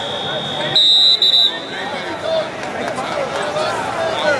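A referee's whistle gives one short, steady, shrill blast about a second in, stopping the wrestling action. Arena voices and chatter carry on underneath.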